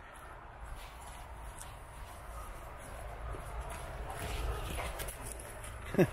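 Footsteps on a leaf-littered dirt path going down a steep embankment, soft and irregular, over a steady low rumble on the microphone.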